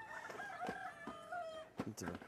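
A rooster crowing: one long call of about a second and a half that dips slightly in pitch at the end, with a couple of short knocks around it.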